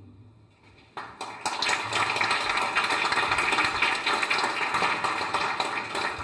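The last held chord of the orchestra and choir dies away, then audience applause starts about a second in and carries on steadily.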